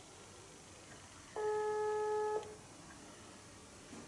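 Smartphone speaker playing a call's ringing tone: one steady beep about a second long, heard while an outgoing video call waits to be answered.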